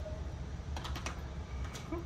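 Light clicks and clatter of markers handled in a cup, a cluster about a second in and a few more near the end, over a low steady hum.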